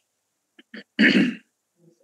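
A person clearing their throat into an open microphone: two small catches, then one loud harsh rasp about a second in.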